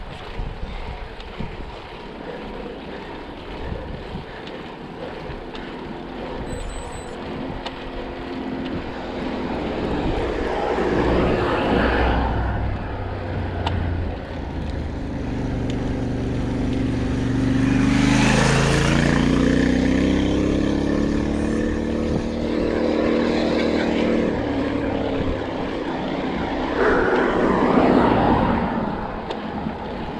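Motor vehicles passing on the road, their engine note climbing in pitch and then falling away as they go by, loudest a little past halfway with another swell near the end, over a steady rush of wind on the microphone.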